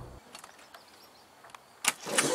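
The last held bass notes of an intro music track die away, then a quiet stretch with a few faint ticks, ended by one sharp click shortly before the end.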